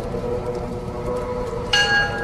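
Background sound bed of sustained droning tones over a low rumble, with a sudden bright ringing strike, like a struck chime, near the end.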